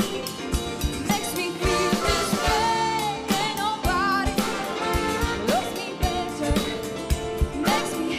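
A live big band playing a funk-pop groove, with a drum kit keeping a steady beat under cymbals, and horns and a rhythm section carrying the tune.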